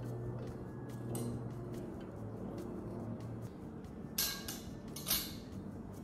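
An adjustable metal clothing rack being handled, with two short sliding scrapes about four and five seconds in, over soft background music.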